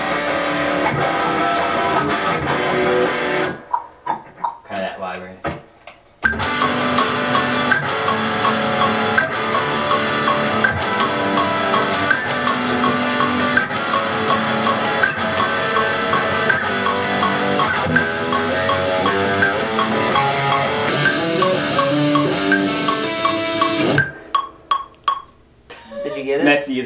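Electric guitar playing, with a steady pulse of hits under it: a short passage, a break about four seconds in, then steady playing from about six seconds in that stops a couple of seconds before the end.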